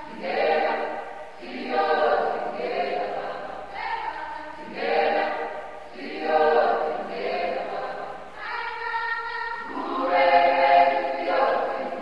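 A choir singing, a group of voices in repeated phrases with no clear instruments.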